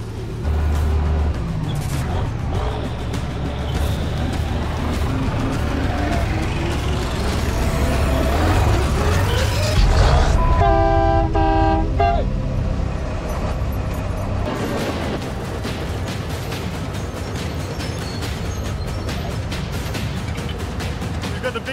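Old front-end loader's engine running and revving as it works, a steady low rumble with rising pitch in places. About halfway through, a loud horn-like tone sounds for roughly a second and a half. Background music runs underneath.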